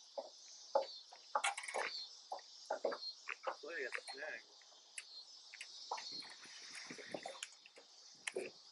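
Steady high-pitched insect chorus, likely cicadas or crickets, buzzing throughout. Over it come many short, irregular sounds and a brief voice-like sound about four seconds in.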